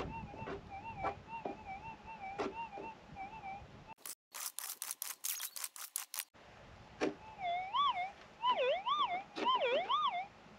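Gold metal detector giving a warbling target tone as the coil is swung over a buried target. About four seconds in comes a quick run of pick strikes digging into the stony ground. After that, from about seven seconds, the detector gives louder, deeper rising-and-falling wails as the coil passes over the freshly dug hole, a sign that the target is still in the ground.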